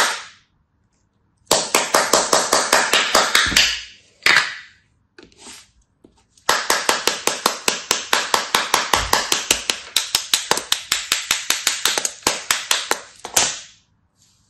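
A knife chopping rapidly through kinetic sand, crisp crunchy strokes about six or seven a second, in two runs of a few seconds each with a pause between them, the second run longer.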